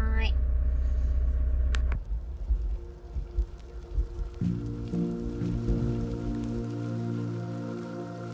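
Steady low rumble of the camper van's engine and road noise inside the cab, which stops abruptly about two seconds in. Background music with sustained tones comes in about halfway through.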